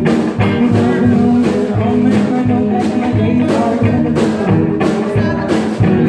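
Live band music: a woman singing with a strummed guitar over a steady thumping beat of about one and a half beats a second.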